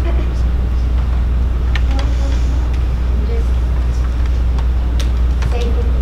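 Steady low hum on the meeting's sound feed, with faint voices speaking away from the microphones and a few small clicks.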